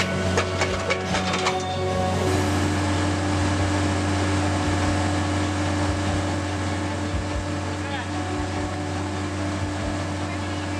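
Compact track loader's engine running steadily with its hydraulic auger raised. In the first couple of seconds a quick run of rattling knocks comes as the spinning auger throws off its load of dirt, then only the steady engine hum is left.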